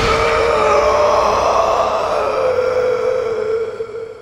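A held, eerie tone from a horror soundtrack, wavering slightly in pitch, dying away near the end.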